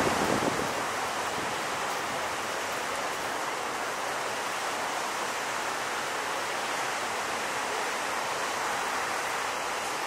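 Steady roar of heavy shore-break surf with whitewater washing, with a louder surge in the first half-second.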